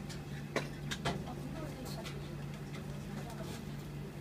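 Steady low hum of kitchen room noise, with a few sharp clicks about half a second and a second in and fainter ones later.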